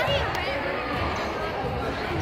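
Gym ambience at a youth basketball game: spectators and players talking, with a couple of short high squeaks near the start, like sneakers on a hardwood court.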